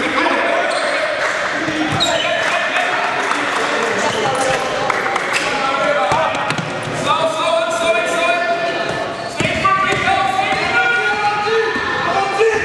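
Basketball bouncing on a sports-hall floor during play, with players shouting and calling out over it.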